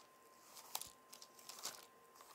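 Faint crinkling, rustling handling noise in a few short crackly bursts, over a faint steady high-pitched tone.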